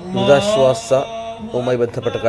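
A man chanting a religious recitation in long held notes, the sound of Eid prayers being led.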